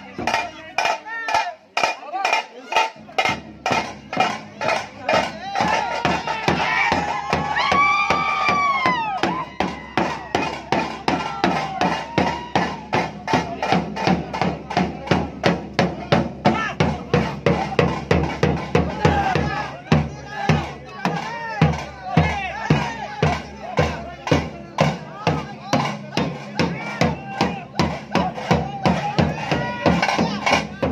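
Drums beaten in a fast, even rhythm amid a shouting crowd, with one long rising-and-falling call about eight seconds in.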